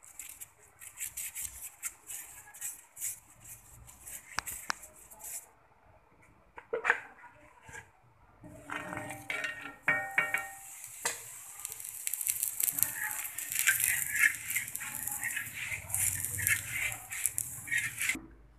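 Ghee sizzling and crackling under a besan paratha frying on a hot tawa. It goes quiet for a moment, then returns louder, with a few clicks and scrapes from a metal spatula on the griddle.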